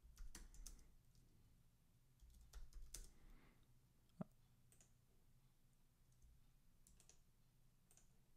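Faint computer keyboard typing in two short spells, near the start and about two and a half to three and a half seconds in, then a single sharper click just after four seconds.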